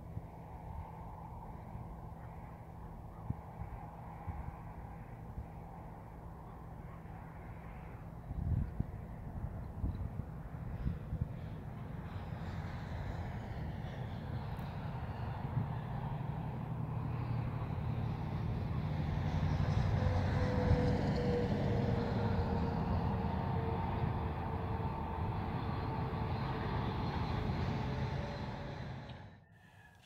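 Road traffic: a steady low engine hum, with a few knocks about eight seconds in. A vehicle approaches and passes, building for several seconds, loudest just past the middle with a slowly falling tone, then fading away.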